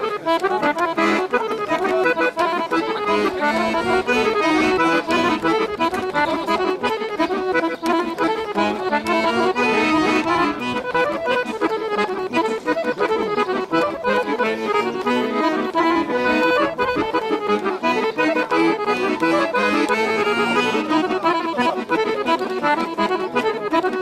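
Guerrini chromatic button accordion playing a fast traditional tune, a continuous stream of quick notes over a sustained reedy accompaniment.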